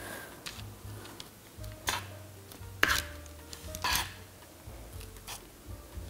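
Metal offset spatula scraping and tapping against a metal baking sheet and parchment paper as meringue is spread: a few brief scrapes about two, three and four seconds in, with smaller ones between. Faint background music underneath.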